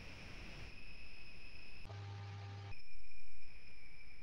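Pause in a talk recording: room and recording noise with a steady high electrical whine, and a low mains hum that cuts in and out abruptly.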